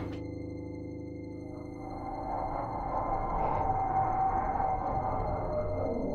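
Suspense film score: thin steady high tones held over a low droning swell that grows louder about two seconds in.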